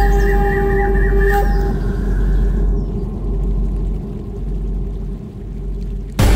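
A deep, steady rumble, with held musical tones above it that stop about a second and a half in; after that only the low rumble and a thinning hiss remain.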